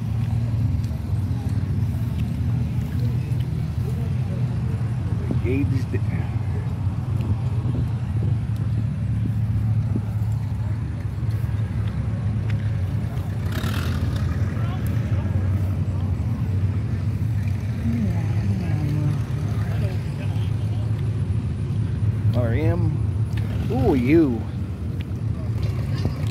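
Outdoor background of a steady low rumble, with faint distant voices now and then and a brief rustle about halfway through.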